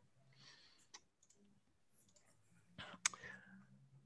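Near silence with two short clicks, a faint one about a second in and a sharper one about three seconds in.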